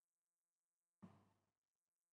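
Near silence, with one faint brief sound about a second in that fades away within half a second.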